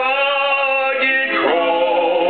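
A man singing a slow hymn, holding long drawn-out notes, with a slide down in pitch and back up about a second and a half in.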